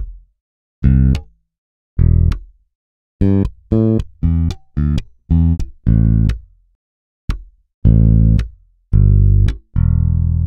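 Virtual Precision bass guitar (Ample Bass P Lite II sample plugin) playing about a dozen short low notes, with a quick run of notes in the middle. Each note is cut off with a click, the accentuation noise that imitates the string being stopped by the hand.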